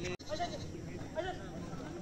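Goat bleating, with people's voices talking and calling across the field.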